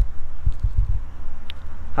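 Wind buffeting the microphone outdoors: a low rumble throughout, with a run of stronger gusts between about half a second and a second in.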